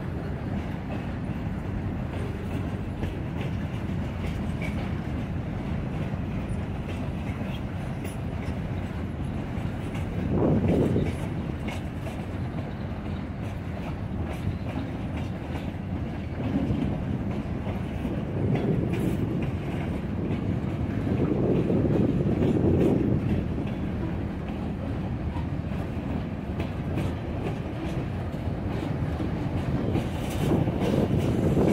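Freight cars of a Norfolk Southern mixed manifest train rolling slowly past: a steady rumble of steel wheels on rail with clickety-clack over the joints. It swells louder briefly about ten seconds in and again for several seconds past the middle.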